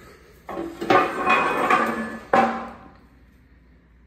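Metal clanking: three sharp knocks on steel with a ringing after them, the first about half a second in and the loudest about a second in, dying away by about three seconds.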